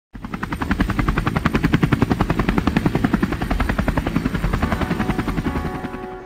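A rapid, even chopping sound, about eight pulses a second over a low rumble, starting suddenly and thinning out near the end as sustained keyboard notes come in.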